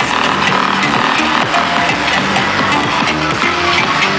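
Electronic dance music played loud and steady through a truck-mounted car-audio sound system, a wall of loudspeakers.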